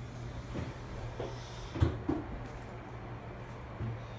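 Steady low hum inside an elevator car, with a few light knocks and bumps, the sharpest just before two seconds in.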